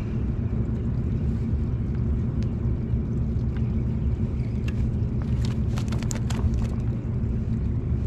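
A steady low rumble throughout, with a few light clicks about five to six and a half seconds in.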